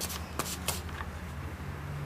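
A flip-flop sandal being handled by a small child: a light rustle with two soft clicks close together about half a second in.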